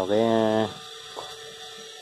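A man's voice holding one drawn-out syllable, then a faint steady hum.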